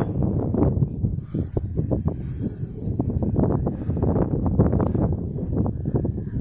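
Wind rumbling on the microphone, with a run of short, crisp rustles and crackles in dry grass.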